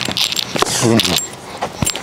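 Clothing rustling against a body-worn microphone as a baseball player moves to field a ground ball, with a short vocal sound partway through and a single sharp click near the end.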